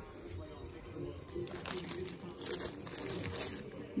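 Clear plastic zip-top bag crinkling and rustling as hands handle and open it, with a run of sharp crackles in the second half.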